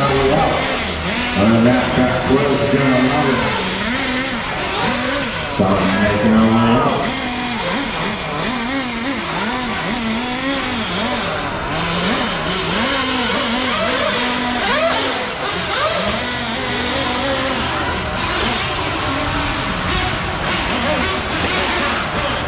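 Nitro-powered 1/8-scale RC buggy engines revving up and down in short throttle blips, a high-pitched buzz that rises and falls again and again, over voices in a large hall.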